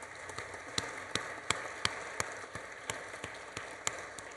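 Audience applauding: a steady patter of many hands, with one nearer person's sharper claps standing out about three times a second.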